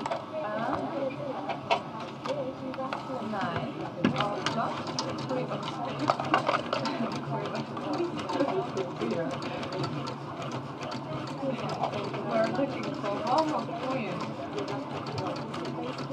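Background murmur of voices from other dealers in a live-casino studio, continuous and low, with scattered light clicks and taps.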